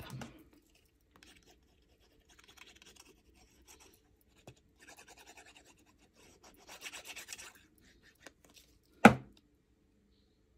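Paper and card being handled and rubbed on a work surface in a few short spells, as a paper strip is glued, with one sharp tap near the end.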